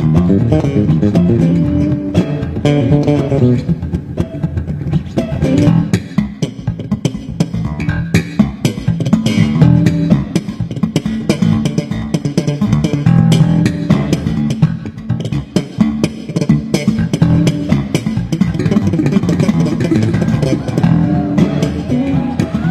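Electric bass guitar played live: a busy stream of fast, low plucked notes with sharp, percussive attacks.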